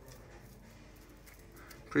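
Faint, soft scraping of a table knife spreading fresh cream cheese over a crepe.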